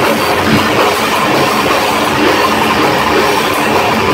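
A heavy metal band playing live and loud: distorted electric guitars and a drum kit in a continuous wall of sound.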